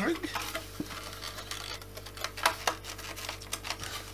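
Hard plastic parts of a Dyson DC25 vacuum cleaner being worked by hand, rustling and scraping with a handful of sharp separate clicks, as the hose and its plastic tabs are pushed and levered against the body.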